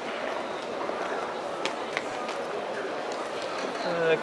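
Background ambience of a large hall: a steady hum of faint, distant voices with a few light taps, about a second and a half and two seconds in.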